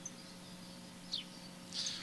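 A few short, faint bird chirps over a low steady hum.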